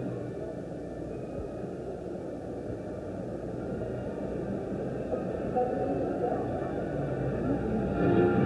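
A large crowd of convention delegates cheering and clapping, a dense mass of voices that swells a little toward the end.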